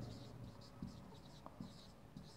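Faint short strokes of a marker writing on a whiteboard, with a few light ticks as the pen meets the board.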